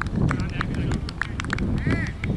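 Distant shouting voices of players on a football pitch, short high calls over a low rumble of wind on the microphone.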